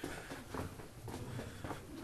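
Faint footsteps of someone walking through a tunnel, a few soft, irregular steps over a low background noise.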